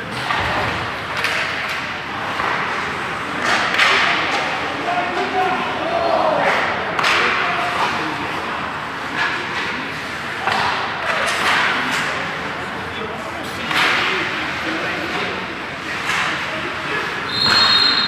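Ice hockey practice in an echoing arena: repeated sharp cracks of sticks and pucks, with skates scraping the ice and indistinct voices of players and coaches. A short high whistle blast sounds near the end.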